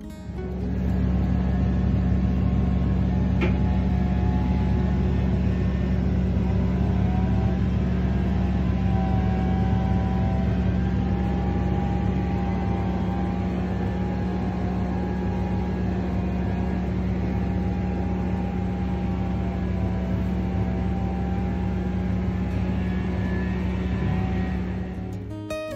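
Combine harvester running, heard from inside the cab: a loud, steady engine and machinery drone with a low hum and wavering higher whines. A single click about three and a half seconds in.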